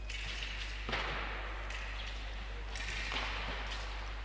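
Foil bout in progress: a few sharp clacks and scrapes from fencers' feet striking the piste and blades meeting during an attack, with a low steady hall hum underneath.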